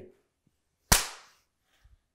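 A single sharp crack about a second in, dying away within half a second.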